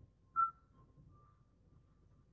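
A single short whistle-like chirp about half a second in, over quiet room tone with a faint, intermittent high tone.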